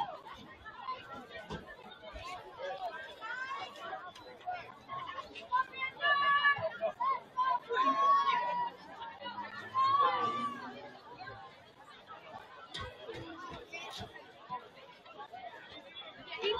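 Chatter of many voices from players, coaches and spectators at a football game, with a few loud shouted calls about six, eight and ten seconds in.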